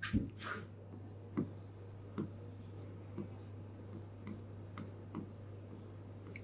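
Pen stylus writing on an interactive whiteboard screen: light, scattered taps and faint strokes, about one a second, over a steady low electrical hum.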